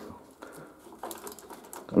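Wire cutters working on old wiring: a few faint clicks and rustles as wires are handled and snipped.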